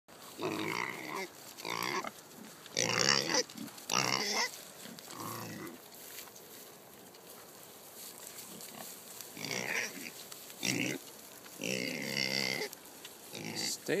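Kunekune pigs calling excitedly over food, about nine short, loud pitched calls in two bunches with a quieter stretch in the middle.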